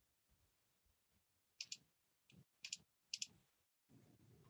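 Three clicks of a computer mouse, each a quick double tick, about a second and a half in, near three seconds and just after, over near silence.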